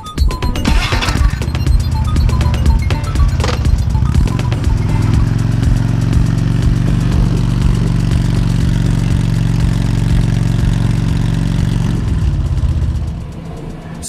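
Harley-Davidson Road Glide's Twin Cam V-twin engine running at low, steady revs as the bike pulls away, with background music over it; both fade out about a second before the end.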